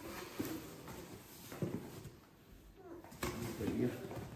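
Cardboard box and packaging being handled while unboxing, with low murmured voices and a short sharp rustle or knock about three seconds in.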